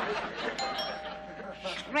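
Two-note doorbell chime: a ding and then a lower dong, both ringing on for over a second.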